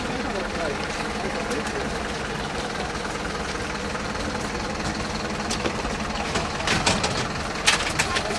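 A vehicle engine idling with a steady low hum under faint voices, with a few sharp metallic clacks near the end as a wheeled stretcher is handled at the ambulance.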